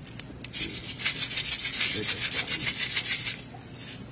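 Plastic sprinkle shaker shaken rapidly, the sprinkles rattling inside it in a quick, even rhythm for about three seconds, stopping shortly before the end.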